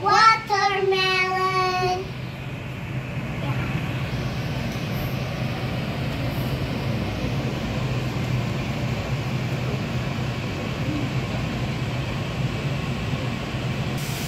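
A child's voice holding a drawn-out note for the first couple of seconds, then a steady, even low rumbling hum with no clear knocks.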